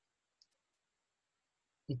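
Near silence in a pause between sentences, broken by one faint click about half a second in.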